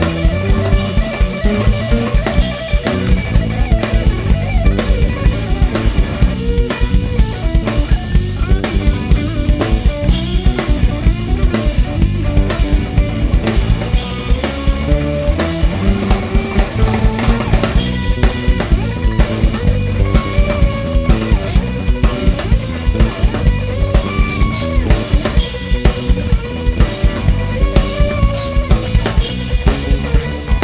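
Live blues-rock band playing an instrumental break: a semi-hollow electric guitar takes a lead solo of bending, gliding notes over electric bass and a drum kit keeping a steady beat.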